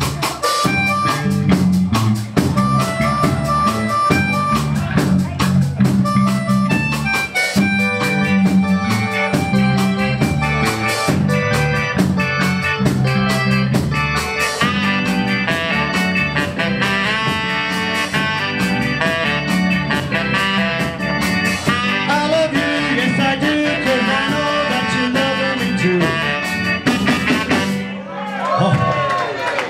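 Ska band playing live: drum kit, electric guitar, bass guitar, keyboard and saxophone in an instrumental passage, with a repeating bass line under held melody notes.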